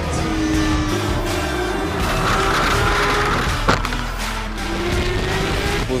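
Porsche 911 GT3 Cup race car's flat-six engine running under load, its pitch slowly rising as it accelerates, mixed with background music. A sharp click comes about halfway through.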